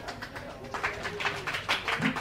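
A small audience clapping: quick, uneven hand claps, several a second.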